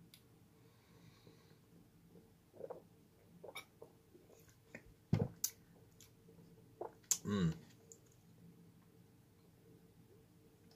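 Quiet room with scattered small clicks and mouth noises from someone sipping a drink from a glass bottle: a sharp click a little past five seconds in, then a short voiced sound with falling pitch about two seconds later.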